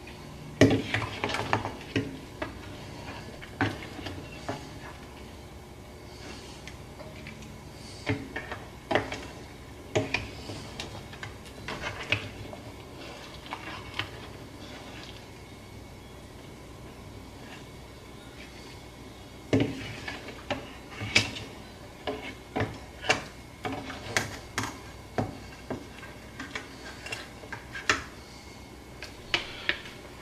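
A serving spoon knocking and scraping against a stainless steel stockpot as boiled shrimp are scooped into a bowl, in irregular clusters of sharp clinks with a quieter stretch in the middle.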